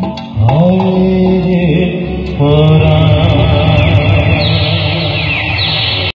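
Live band music ending a song: a male singer holds a long final note over sustained keyboard chords, after a last hand-drum stroke at the start.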